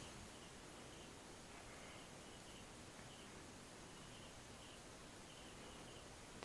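Near silence: room tone, with a faint high tone coming and going.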